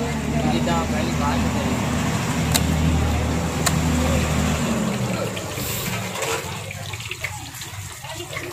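A motor vehicle's engine drones at a steady low pitch and fades away about five seconds in, over a steady hiss of street noise, with a couple of sharp clicks.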